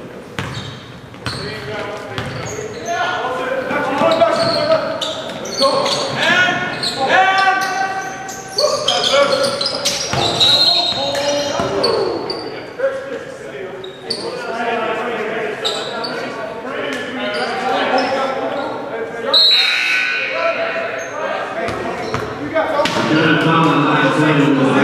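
A basketball bouncing on a hardwood gym floor during a game, with players' and onlookers' voices carrying through the gym and a couple of brief high-pitched squeaks or calls.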